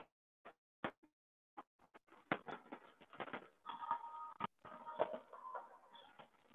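Faint, choppy sound over a video-call audio line, cutting in and out in short fragments with a few brief tones: the call's audio is breaking up.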